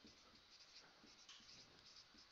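Faint strokes of a marker writing on a whiteboard, a few soft scratches and ticks over near silence.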